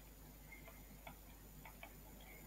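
Near silence with a few faint, irregular ticks: a stylus tapping on a pen tablet while handwriting a formula.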